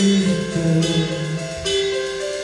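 A live indie rock band playing: electric guitars, bass and drums, with a melody moving in held notes.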